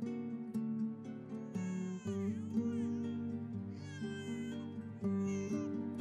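A premature newborn baby crying in three short, high, wavering wails, over soft background music.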